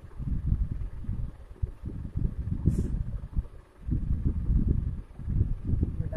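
Irregular low rumbling noise, with a short soft hiss about three seconds in.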